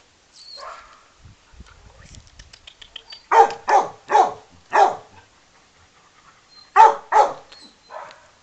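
Dog barking at close range: four barks in quick succession, a pause of about two seconds, then two more barks near the end.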